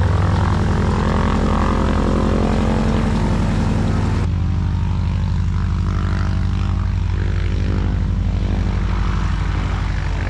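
Piston engine of a propeller aircraft running steadily on the ground, a loud drone with a fast even beat. About four seconds in the sound changes abruptly, the higher part dropping away while the low drone goes on.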